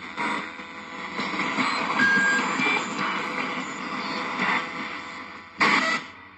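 Spirit box radio sweeping through stations, played through an enhancer box: continuous hissing static with brief snatches of tones and a short, louder burst near the end. The uploader takes a sound in it for a spirit voice saying 'Owwww'.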